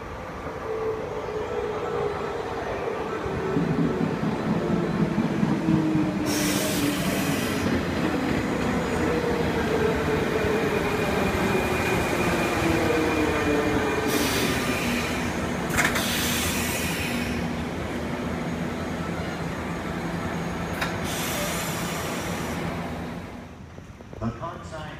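Orange electric commuter train on the JR Osaka Loop Line pulling into the platform: a motor whine falls steadily in pitch as it slows, over a loud rumble of wheels on rail. Several short bursts of high hiss break in, and the sound cuts off suddenly near the end.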